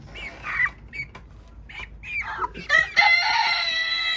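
Young chickens making short clucks and chirps as they scuffle over a caught mouse, then one long, drawn-out call about three seconds in, held at one pitch and falling slightly at the end.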